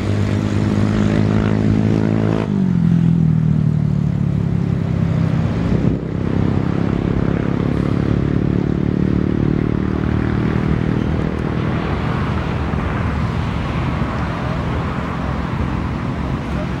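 An engine passing by: a steady droning hum that drops in pitch about two and a half seconds in, then slowly fades, leaving a broad rushing noise.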